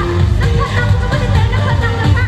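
Loud dance music with a heavy bass line and a melody over it, playing without a break.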